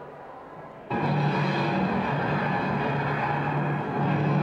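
Dramatic orchestral film soundtrack playing over speakers: quiet at first, then about a second in it breaks suddenly into a loud, dense passage that holds steady.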